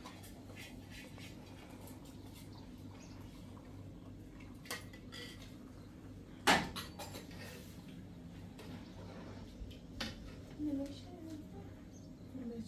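Metal pot lid and ladle clinking against a large aluminium cooking pot on a gas stove as the pot is stirred, with one louder metallic clank about six and a half seconds in, over a steady low hum.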